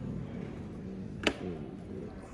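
Indoor store background murmur with faint distant voices, and one sharp click a little over a second in.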